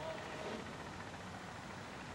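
Steady background noise of an outdoor soccer field picked up by the broadcast microphone, with a faint distant voice shouting near the start.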